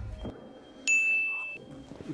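A single bright ding sound effect about a second in, ringing briefly and fading, marking the shot counter going up.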